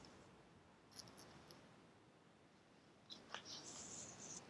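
Faint rustle and crinkle of a picture-book page being turned by hand, in brief soft bursts about a second in and again near the end.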